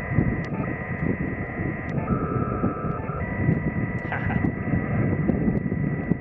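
Yaesu FT-897 transceiver's speaker on upper sideband giving out several steady whistling tones over hiss: interference the radio generates internally and then picks up itself. One tone cuts in for about a second around two seconds in, over a low rumble of wind on the microphone.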